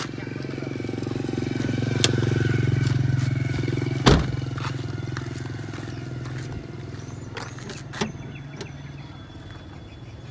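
A passing vehicle's engine hum swells over a few seconds and then fades away. There is a loud thump about four seconds in and a few lighter clicks.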